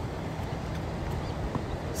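Steady outdoor noise of wind and distant ocean surf, with a faint click about one and a half seconds in.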